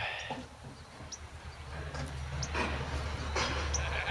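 Distant scrap-processing machinery running, heard as a steady low hum that swells slightly, with a few faint high chirps over it.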